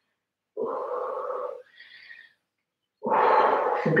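A woman breathing out audibly through her voice for about a second while leaning forward into a seated wide-legged stretch, followed by a faint breathy sound. Near the end a second voiced breath out runs straight into speech.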